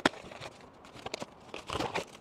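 Unpacking cardboard filament boxes: a sharp knock of cardboard right at the start, then handling noise, and a louder crinkle of the plastic bags around the filament refill spools near the end.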